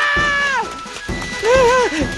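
An animated character's voice holds a long, loud yell that breaks off about half a second in. Near the end comes a short, wavering, whinny-like cry, over background music.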